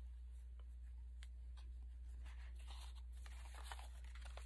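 Faint rustling and light taps of paper and a crochet lace piece being handled and laid onto a journal page, over a steady low hum.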